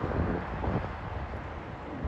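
Low rumble of road traffic moving through an intersection, with wind buffeting the microphone.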